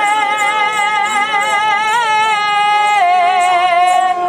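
Punjabi folk music: one long held note, steady with a slight waver, that steps down to a lower note about three seconds in.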